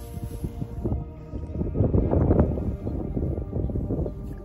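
Background music, with a burst of close, irregular rustling and crackling about halfway through.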